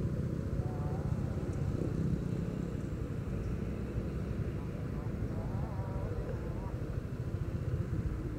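A Honda Vario 125 scooter's single-cylinder engine idling steadily while the rider waits.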